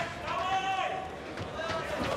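A voice yelling one long drawn-out shout in the first second, then shorter shouted bits, over the steady background noise of the arena.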